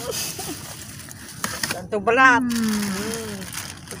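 A woman's voice: a drawn-out exclamation starts about two seconds in and slowly falls in pitch, with quieter vocal sounds around it, over steady background noise.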